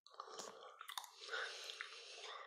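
A person chewing a mouthful of Aero Peppermint aerated chocolate close to the microphone, with small wet mouth clicks throughout.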